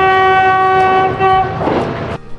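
Train horn sounding one long, steady blast of about a second and a half over a dense rushing noise.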